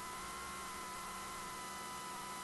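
Faint steady electrical hum with a few high, steady whining tones over a light hiss, unchanging throughout.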